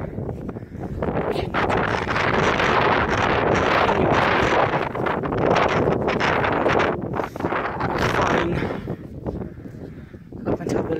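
Wind blowing across the microphone: a loud, steady rushing noise that eases near the end.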